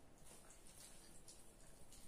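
Near silence: quiet room tone with a few faint, soft clicks and crackles.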